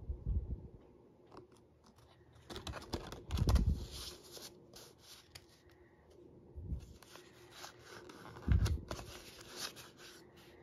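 Paper rustling and sliding as printed sheets and a thank-you card are handled and folded, with a few low thumps; the handling is loudest about three and a half seconds in and again near the end, as the papers go into a rigid cardboard mailer.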